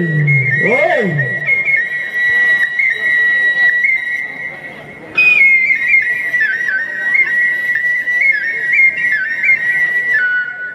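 A high, pure whistle-toned melody played solo into a microphone: held mostly on one note with quick upward flicks, a brief breath break about five seconds in, then coming back higher and settling a little lower.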